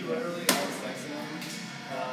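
A single sharp crack about half a second in, a baseball bat hitting a pitched ball, with a short ring echoing off the indoor hall.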